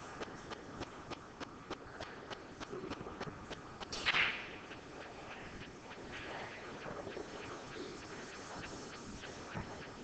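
Quiet pool-hall room sound with faint, regular clicks, about three or four a second, over the first few seconds. A brief loud hiss comes about four seconds in.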